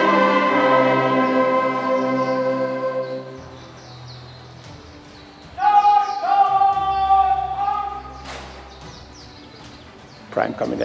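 Band music, likely a national anthem, ending on a long held chord that dies away about three seconds in. After a short lull comes a brief phrase of a few held notes, from about five and a half to eight seconds.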